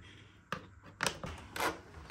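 A few short knocks and rubs from hands handling the hard plastic body of a Dyson DC02 cylinder vacuum cleaner.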